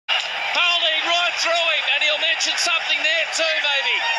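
Excited raised voices with no words made out.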